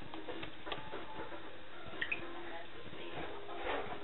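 Puff-puff dough balls deep-frying in hot vegetable oil, a steady sizzle with a couple of small pops.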